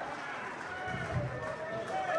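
Indistinct voices of people talking in the background, too unclear for words to be made out.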